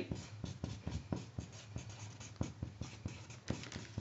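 Marker writing a word on a sheet of cardboard: an irregular run of short scratching strokes, several a second.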